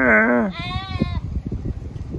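Sheep or goats in a grazing flock bleating twice: a deeper, wavering bleat that ends about half a second in, at once followed by a higher-pitched wavering bleat lasting about as long.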